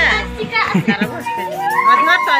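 A small child's voice over background music.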